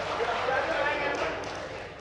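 Stage dialogue: performers talking back and forth, growing quieter toward the end, with a few light knocks underneath.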